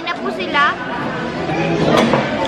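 Speech only: people talking over the background chatter of a busy restaurant.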